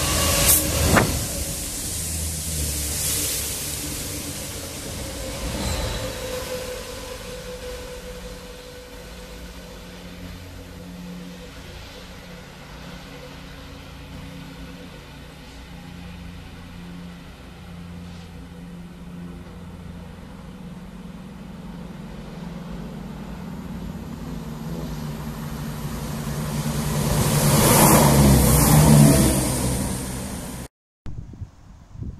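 Class 66 diesel locomotive's two-stroke V12 engine working hard as it hauls a rail head treatment train past, loudest in the first second, with its note falling as it draws away. Near the end a second rail head treatment train approaches and passes close, building to a loud peak with engine and wheel noise.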